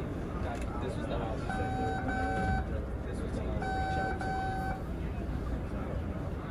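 Subway car door chime on a Red Line train standing at a station: two pairs of short, steady beeps about two seconds apart, over the steady rumble of the car and platform.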